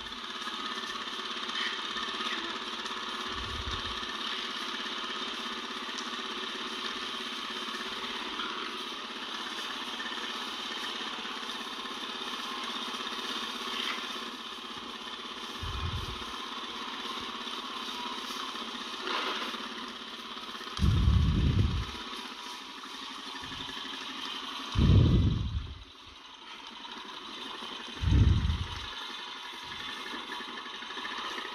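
Farm bike engine idling steadily, with several brief low rumbles breaking in over it, the loudest in the last third.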